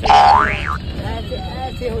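A loud, pitched whoop that holds briefly, then glides sharply upward and ends within a second. It sits over a low rumble inside the bus.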